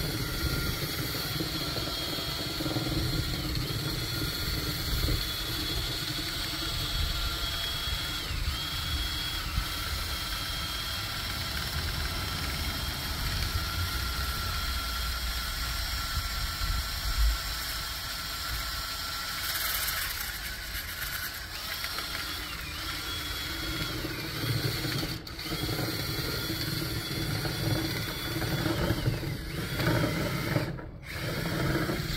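Cordless drill spinning a rotary brush rod inside a dryer vent duct, the rod rattling and scraping in the duct. The motor's high whine holds steady, dipping briefly several times.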